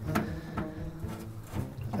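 A few light metallic clicks and scrapes as an electric motor with a homemade coupler is guided down onto a ride-on mower's drive pulley. A faint low hum runs underneath.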